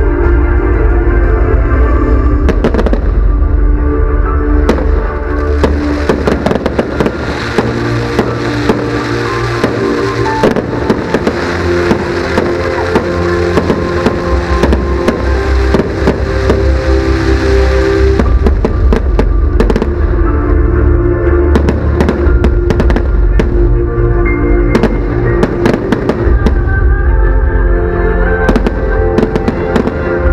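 Fireworks display: repeated sharp bangs and dense crackling, thickest from about five seconds in until about eighteen seconds in, over loud music playing throughout.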